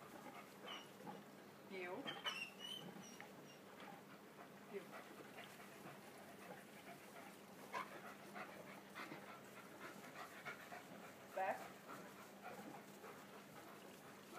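German Shepherd dog giving a few short, high whines during heeling work, the clearest about two seconds in and near the end.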